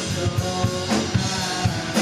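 Live rock band playing an instrumental stretch: electric guitar, electric bass and a drum kit keeping a steady beat, with no vocals.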